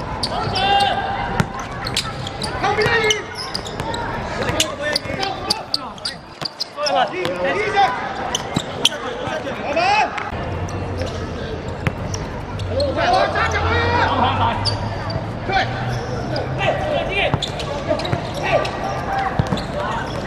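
Footballers shouting and calling to each other during play, with sharp thuds of the ball being kicked scattered through. A low steady hum sits underneath from about halfway.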